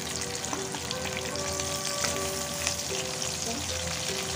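Pieces of poa (croaker) sea fish sizzling steadily in hot oil in a nonstick frying pan, with light clicks and scrapes of a spatula moving them about.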